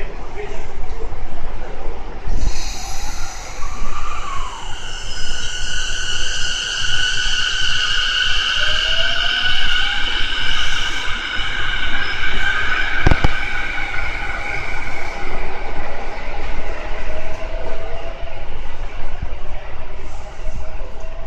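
A JR East E233-8000 series electric train pulling out of the station and picking up speed. Its inverter and traction motors give off a high steady whine and tones that climb in pitch as it accelerates, over the rumble of its wheels. There is one sharp knock about 13 seconds in.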